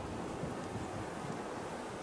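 Steady wind noise, an even rush of air with no distinct events.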